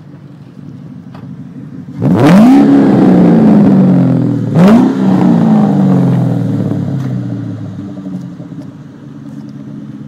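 Ford Mustang V8 idling low, then revved hard about two seconds in, blipped once more a couple of seconds later, with the revs falling slowly back to idle.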